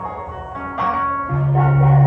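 Live indie-rock band playing the song's opening: electric guitar picks single notes, and a loud, sustained low bass note comes in a little past halfway through.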